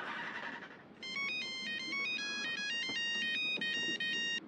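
A mobile phone ringtone: a bright electronic melody of quickly stepping notes that starts about a second in and plays for about three seconds.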